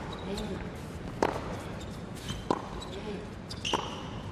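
Tennis rally on an indoor hard court: three racquet strikes on the ball about a second and a quarter apart, with a shoe squeak near the end over steady crowd noise.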